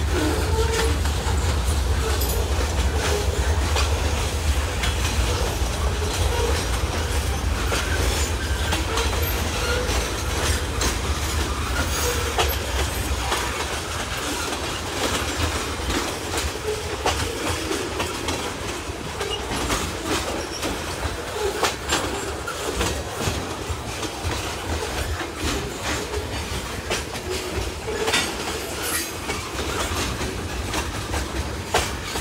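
Freight cars (tank cars and boxcars) rolling past, with a steady rumble of steel wheels on rail and a continuous stream of clicks and clacks from wheels crossing the rail joints. The deep rumble eases off about halfway through.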